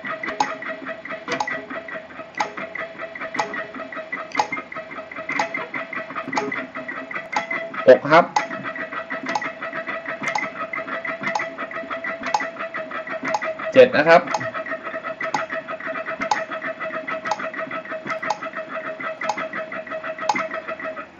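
Electric guitar, one note picked very fast in even groups against a metronome ticking once a second (60 bpm). The picking is an exercise in subdividing the beat: five notes per tick, then seven per tick from about two-thirds of the way through.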